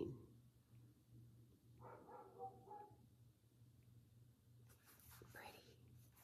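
Near silence: room tone with a steady low hum, and a faint, brief, indistinct sound about two seconds in.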